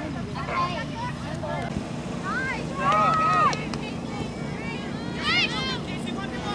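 Soccer spectators shouting from the sideline: one longer held call about three seconds in and a short, higher-pitched shout near the end, over a steady low rumble of wind on the microphone.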